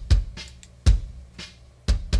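Layered bass drum, an acoustically played kick blended with a sample, playing a steady beat of hits about two a second with a full, heavy low end. Its two tracks are still in phase with each other.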